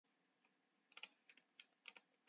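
Faint computer keyboard clicks: a short run of about seven keystrokes starting about a second in.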